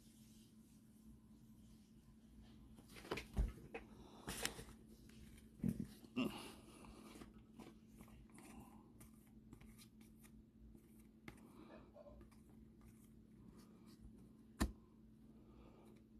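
Faint handling of a baseball card pack and its cards: soft rustles and a few short clicks, busiest a few seconds in, then a single sharp click near the end.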